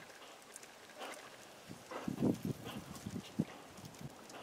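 Brant calling: a quick run of short, low, guttural notes from about two to three and a half seconds in, over a faint background hiss.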